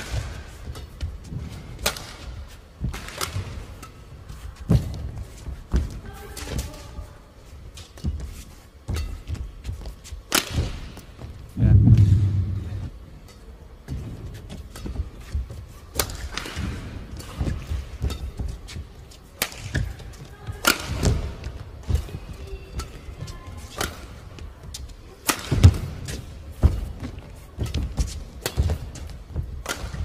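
Badminton rackets striking a shuttlecock back and forth in a long rally, sharp cracks about once a second, with players' footfalls thudding on the court and a heavier low thud about twelve seconds in.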